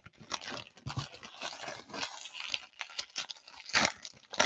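Baseball card pack wrappers being torn and crumpled by hand: a run of irregular crinkling and crackling, loudest near the end.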